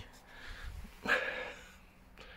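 A man breathing close to the microphone, with one sharp breath out about a second in that fades away.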